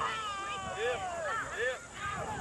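Several young people's voices talking and calling out over one another, with high pitches that slide up and down.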